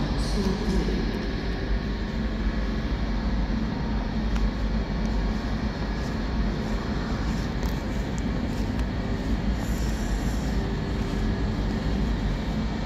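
An NMBS/SNCB AM08 Desiro electric multiple unit pulling slowly into an underground platform, a steady rumble of traction motors and wheels echoing in the tunnel.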